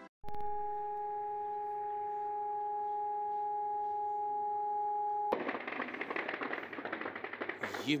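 Air-raid siren sounding one steady note, with a second tone an octave below it, cut off abruptly after about five seconds. Then a dense, rapid crackling follows until the end.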